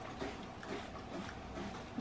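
Faint sucking and slurping through drinking straws, in a few soft pulls about every half second.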